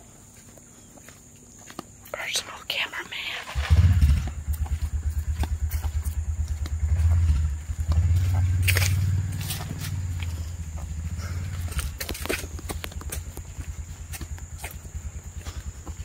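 Footsteps crunching through dry leaf litter on a woodland path. From about three and a half seconds in, a steady low rumble comes in on the microphone and stays to the end.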